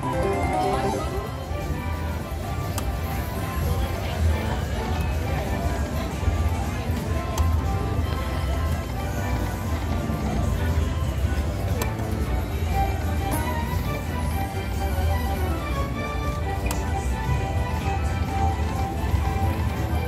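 Jingling electronic tunes and chimes from a Genghis Khan video slot machine as its reels spin, with no single sound standing out. Under them runs the steady din of a casino floor: other machines and distant voices.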